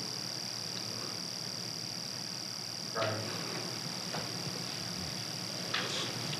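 Steady background: a high-pitched whine and a low electrical hum, with a short faint sound about three seconds in.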